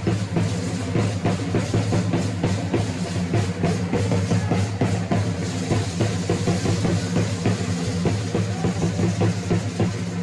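Drums accompanying a traditional Mexican religious danza, beating a loud, steady, fast rhythm for the dancers.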